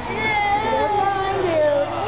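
A young child's high-pitched, drawn-out vocalizing without words, the pitch wavering and sliding down near the end.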